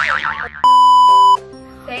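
A short wobbling boing-like sound, then a loud, steady, single-pitch electronic beep lasting under a second, over background music.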